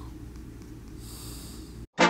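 Quiet room tone with a low steady hum and a soft breath about a second in, dropping out to silence just before the end.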